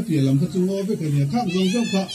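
Speech: a person talking without pause.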